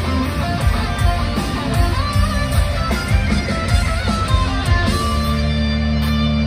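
Live rock band in full playing: an electric guitar lead with bending notes over drums and bass. About five seconds in, the drum hits stop and the band rings out a sustained chord.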